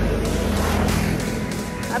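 A motor vehicle's engine going by, a low rumble that fades away about halfway through.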